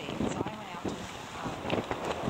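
Wind buffeting the camera microphone, with indistinct talking underneath.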